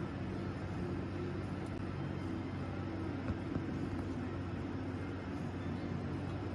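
Steady low mechanical hum of machinery in a test lab, with a constant drone that does not change. This is the sound while a pneumatic test rig holds its load on the armrest.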